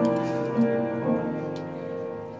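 Church worship band playing a song's instrumental opening: sustained keyboard chords with a few light taps.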